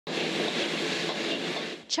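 Food stir-fried in a wok over a high gas flame: a steady, loud rush of burner flame and sizzling that cuts off near the end.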